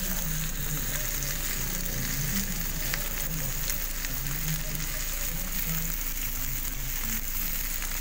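Meat and sweet potato pieces frying in oil in a grill pan over a gas burner: a steady sizzle with fine crackles throughout.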